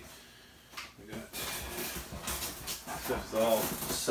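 Rustling and crinkling of packing material and wrapping as hands dig through a box, starting about a second and a half in, with low muttered speech near the end.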